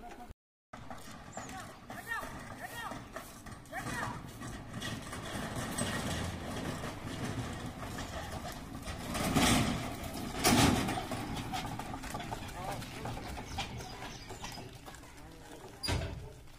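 Voices outdoors over the sound of a pair of bullocks drawing an empty rubber-tyred cart along a dirt road, with short chirps early on. A loud burst comes about nine and a half seconds in and another about a second later.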